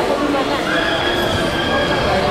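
Busy, echoing ambience of a large public hall with voices, and a steady high-pitched squeal lasting about a second in the middle.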